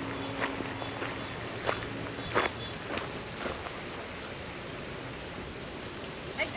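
Footsteps on a gravel path, a handful of irregular steps, with a faint steady hum that stops partway through.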